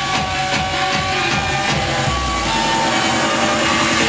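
Hardstyle dance music from a DJ set over a sound system: a driving kick-drum beat that drops out about halfway through, leaving held synth notes over a low sustained bass tone.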